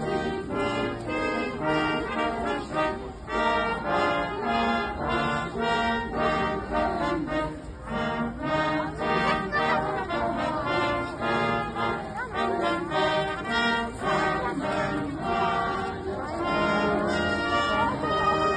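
Brass band playing a tune, its notes changing about every half second.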